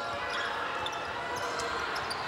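Steady crowd noise in a basketball arena during live play, with a few brief high squeaks on the court.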